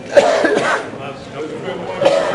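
A person coughs loudly once, about a quarter second in, over the sound of people talking.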